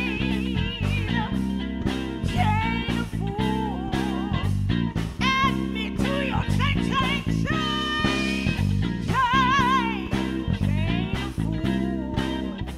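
Live soul-rock band playing: a female lead vocalist sings long notes with a strong vibrato over electric guitar, electric bass and a drum kit.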